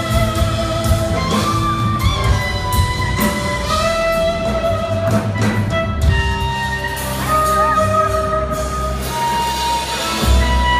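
Live band with an electric guitar playing a lead line of long held notes that slide and bend in pitch, over drums and bass, heard from the audience in a concert hall.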